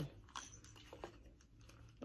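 Faint handling clicks and rustles as over-ear headphones are picked up and put on, over a low steady hum.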